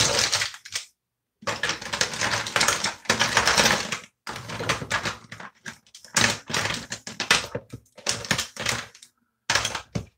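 Rapid, irregular clattering and rustling of small plastic makeup items, lipstick and lip gloss tubes, being rummaged through close to the microphone. It comes in bursts with short pauses.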